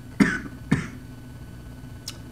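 A man with an irritated throat coughs twice in quick succession, about half a second apart.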